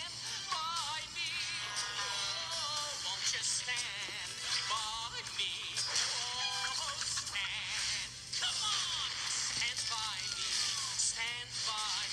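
Cartoon soundtrack playing through a small phone speaker: music with a wavering, wobbly voice and quick cartoon sound effects.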